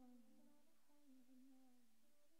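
Faint wordless vocal humming, one held note that wavers slightly in pitch as the song fades out.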